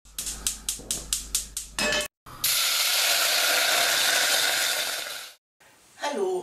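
Gas hob burner's spark igniter clicking rapidly, about four clicks a second for two seconds. After a short break comes a steady loud hiss of the burner running, which cuts off suddenly near the end.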